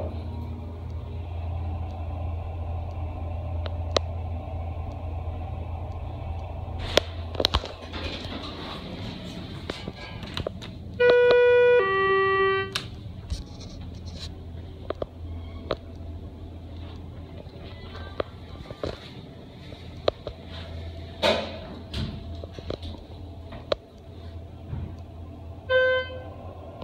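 Schindler HT hydraulic elevator: the car runs with a steady low hum that fades out as it stops, then a two-note arrival chime, a higher note then a lower one, sounds about 11 seconds in. Scattered knocks and clunks follow as the doors work.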